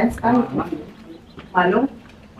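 A woman's voice close to the microphone, making two short murmured or hummed sounds without clear words: one at the start and one a little past halfway, the second rising in pitch at its end.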